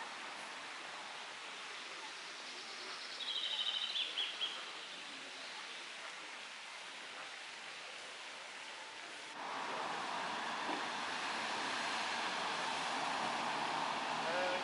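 Steady outdoor background noise with a quick run of high bird chirps about three seconds in. About nine seconds in, the background noise steps up and stays louder.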